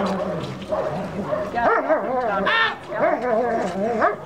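Dobermann giving a string of short, high-pitched yips and whines, worked up during protection bite work.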